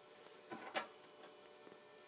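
Quiet room tone with one brief, faint scuffing noise about half a second in.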